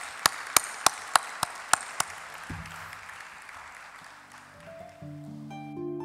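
An audience's applause dying away, with a run of sharp single claps in the first two seconds. Music of held notes comes in about halfway and grows louder near the end.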